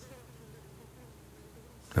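A flying insect buzzing faintly, its pitch wavering up and down.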